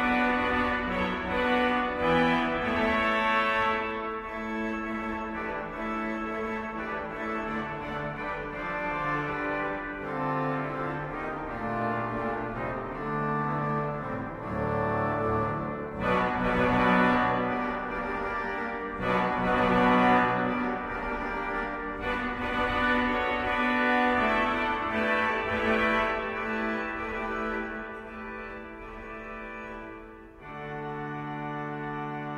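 1917 Eskil Lundén pipe organ played on its reed stops: sustained chords full of overtones over a moving bass line, thinning out and dying away near the end.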